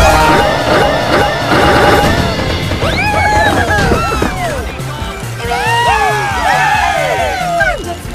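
Remix music with a steady, pulsing bass beat under a jumble of overlapping cartoon-clip sounds: a loud crash at the very start, then many short, high sliding squeals and cries stacked on top of each other.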